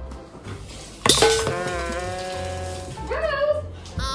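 Background music with a steady bass beat. About a second in, a sharp loud clatter as a plastic baby bowl tips over on a high-chair tray, followed by a long, high-pitched held tone and a shorter wavering one.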